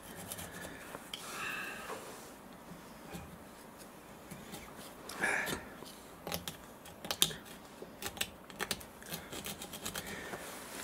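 A thin metal tool scratching and scraping corrosion deposits off the face of a six-cylinder ERA racing-car cylinder head, in uneven strokes. It grows busier in the second half, with a quick run of sharp scrapes and clicks.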